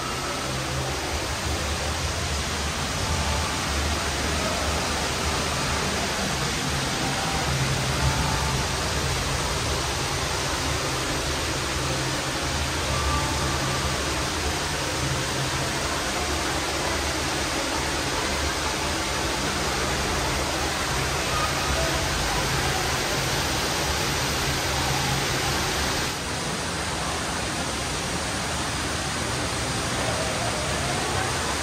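Steady rushing indoor background noise with a low hum underneath and a few faint, short high tones scattered through it; the level dips slightly near the end.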